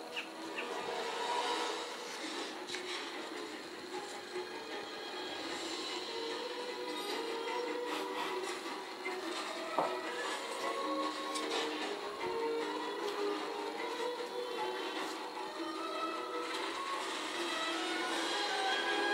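Background score music from a TV drama playing on a television in the room, a run of sustained, shifting notes.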